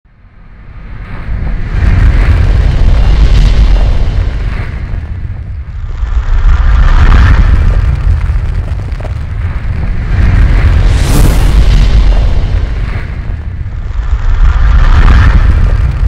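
Cinematic intro sound effects: deep booming hits over a continuous low rumble, swelling in waves about every four seconds, some with a rising whoosh. It fades in over the first couple of seconds.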